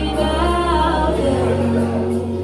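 Recorded gospel song with sung held notes over a deep bass note, the bass fading a little past halfway.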